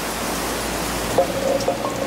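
Steady, even rushing hiss with no distinct events, with a faint brief tone about a second in.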